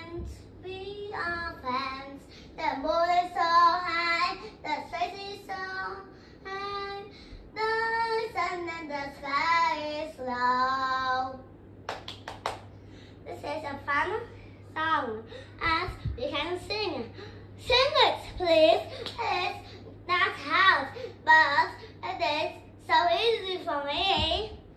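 A young child singing unaccompanied, holding long steady notes in the first half and sliding and wavering in pitch in the second. A few sharp clicks come about halfway through, over a faint steady low hum.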